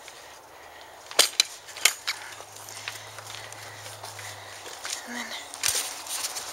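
A few sharp clicks and snaps, four close together in the first two seconds and one more near the end, over a quiet outdoor background.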